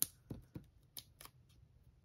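Half a dozen faint, sharp clicks and light paper handling sounds as fingers position and press a small paper die-cut onto a card.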